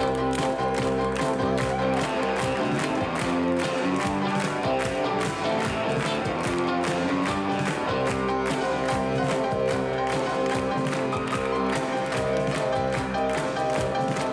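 A rock band playing live: electric bass, electric guitar, keyboard and drum kit in an instrumental passage with a steady, even drum beat and no vocals.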